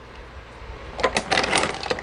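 Hard shell of a raw, still-closed clam clicking and scraping against a spoon and tableware as it is worked at. The clicks come in a quick irregular cluster in the second half. The clam will not open because it has not been cooked.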